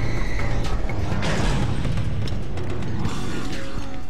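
Clanking, creaking machinery sound effects from an animated mechanical claw arm, over background music.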